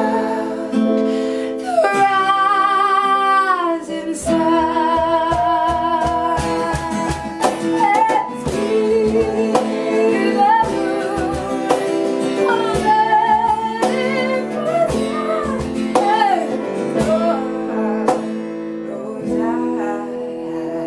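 Two women singing in close harmony over a strummed acoustic guitar and a digital keyboard piano, with a long held note that slides down about two seconds in. A hand-played cajon beat comes in about four seconds in.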